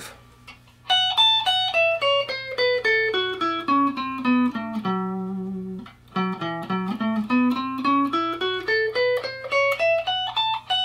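Telecaster-style electric guitar, clean tone, playing a single-note F-sharp minor pentatonic/blues scale run. About a second in it starts stepping down about two octaves, note by note, holds a low note in the middle, then climbs back up to the top.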